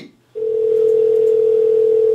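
Telephone call tone: one loud, steady held note that starts about a third of a second in and lasts nearly two seconds.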